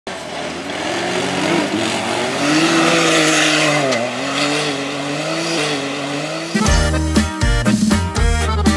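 Off-road vehicle engine revving up and down, with tyres spinning in loose dirt. About six and a half seconds in, a norteño band with accordion and bass starts playing.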